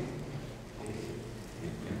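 Brief pause in speech: steady background hiss of a large hall's sound system and room, with no distinct event.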